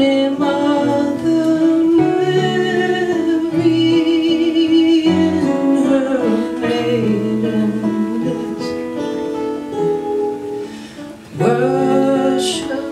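A slow carol melody sung by female voice, with held, wavering notes, over two acoustic guitars fingerpicking; the phrase dies down about eleven seconds in and a new one starts just before the end.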